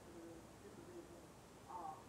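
Faint, distant speaking voice on a microcassette recording, muffled under steady tape hiss, with a slightly louder syllable near the end.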